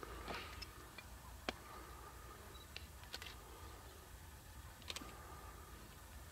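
Quiet outdoor ambience with about five faint, sharp clicks spaced a second or so apart.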